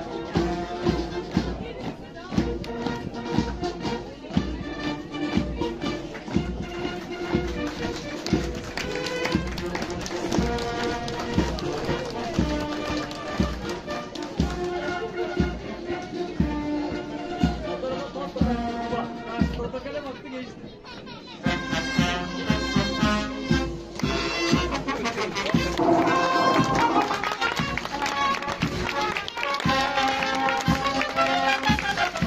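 Military brass band playing a march, brass instruments holding notes over a steady, regular drum beat. The music drops briefly about two-thirds of the way through, then comes back louder.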